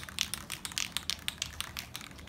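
Aerosol can of Krylon workable fixative being shaken hard, its mixing ball rattling inside in a quick, regular run of sharp clicks. This is the mixing of the fixative before spraying.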